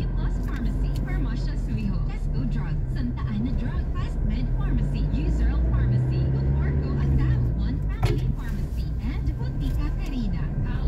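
Car engine and road noise heard from inside the cabin, a steady low hum that swells for a second or two near the middle, with indistinct voices talking over it and one sharp click near the end.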